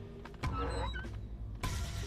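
Wooden lattice doors being pulled shut, a short scraping, squeaky movement about half a second in and another near the end, over a low sustained music score.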